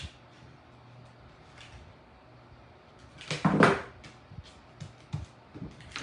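A hot glue gun is set down on a tabletop with one short, loud knock about halfway through. Several light clicks follow as plastic faux-tin wall tile pieces are handled and pressed together.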